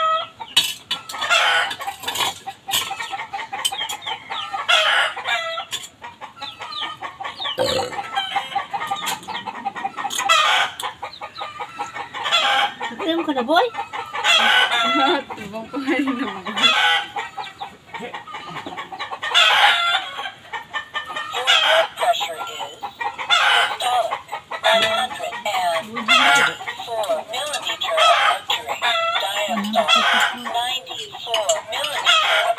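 Chickens clucking and roosters crowing, one call after another with barely a pause.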